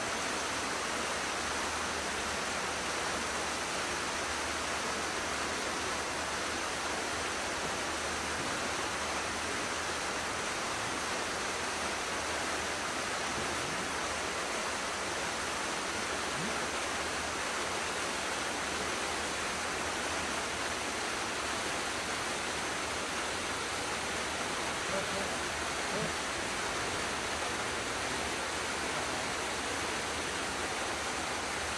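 A steady, even hiss with no distinct events, like static or rushing water.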